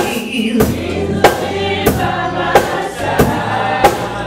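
Live gospel song: a choir singing held notes over a bass line, with a drum kit keeping a steady beat of about three strikes every two seconds.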